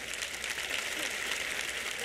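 Audience applauding, the clapping building slightly and then holding steady.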